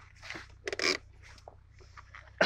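A car engine idling as a low steady hum inside the cabin, with brief rustling and scraping noises on top, the loudest a little under a second in.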